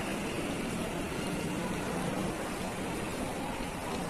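Tiered decorative fountain: water falling from its bowls and splashing steadily into the basin.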